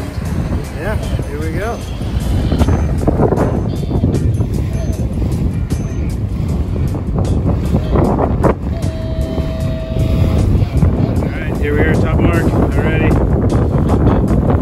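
Loud, steady wind noise on the microphone over the rush of choppy water along the hull of a Mini 6.50 racing sailboat, sailing in about 18 knots of breeze.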